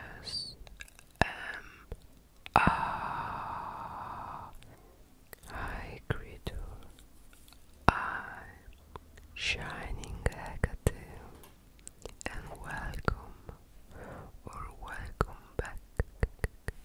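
Close-miked whispering, broken by many short, sharp clicks.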